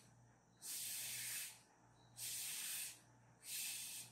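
Breath blown through a drinking straw onto wet paint on paper, pushing the paint across the sheet: three short blows, each under a second, with brief pauses between.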